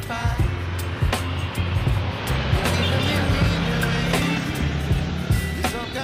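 Background music with a sung vocal over a heavy, steady bass line. In the middle a rushing noise swells and fades as a vehicle passes on the road.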